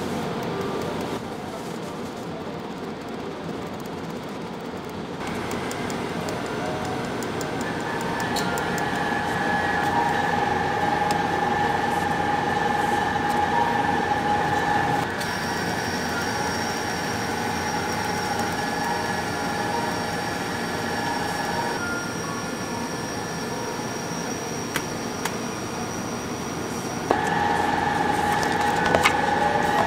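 A steady mechanical hum and hiss, with its held tones changing abruptly a few times, and a few light clicks near the end.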